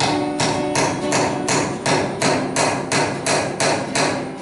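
A hammer driving a nail into a wooden log, struck in a steady rhythm of nearly three blows a second, with acoustic guitar music underneath.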